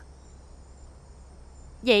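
Insects chirring faintly and steadily in a thin high-pitched tone over a low background hum. A woman's voice comes in near the end.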